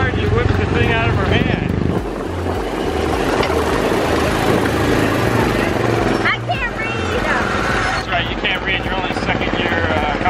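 Small gasoline engine of a Tomorrowland Speedway ride car running as the car drives along the track, its low drone shifting in pitch as the speed changes.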